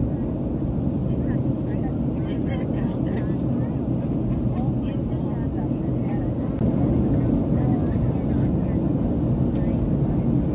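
Steady cabin roar of a Boeing 737 airliner in flight, heard from a window seat: engine and airflow noise, growing a little louder about seven seconds in.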